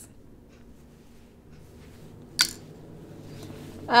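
Quiet handling of wool and cotton fabric, with one sharp click a little past halfway and faint rustling that builds near the end as the fabric is turned over.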